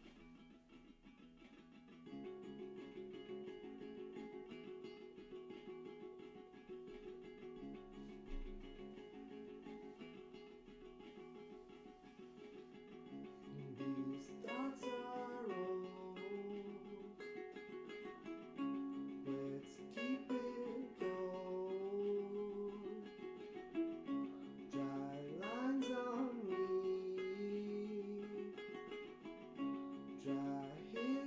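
Acoustic guitar playing chords in a steady rhythm, getting louder about two seconds in. A man's voice starts singing the melody over it about halfway through.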